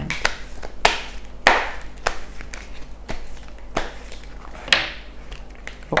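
A deck of tarot cards being shuffled by hand: irregular sharp taps of the cards against each other, with short swishes as they slide.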